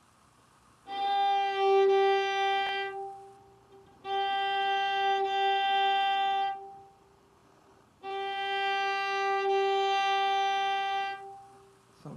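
Violin bowed in three long notes, each held steady on the same pitch for about three seconds, with roughly a second's break between them.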